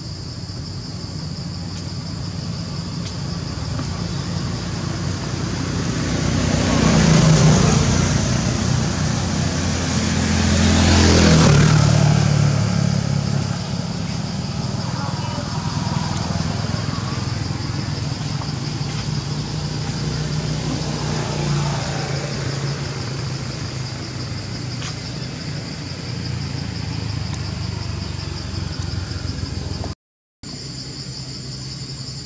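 Motor vehicles passing nearby, the engine sound swelling to its loudest about seven and eleven seconds in and then settling to a steady hum, over a steady high-pitched insect chorus.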